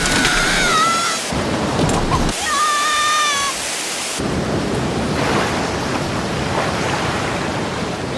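Film soundtrack of a storm at sea: steady heavy rain and wind noise. Two short, high wavering tones rise above it in the first four seconds.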